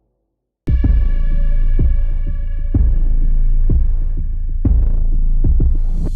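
Silence, then about two-thirds of a second in a loud, deep throbbing bass pulse starts abruptly, with several held synthesized tones over it: a film-trailer soundtrack.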